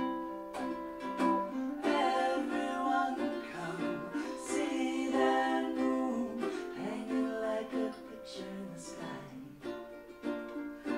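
Live acoustic duet: two ukuleles played together while a woman and a man sing the song.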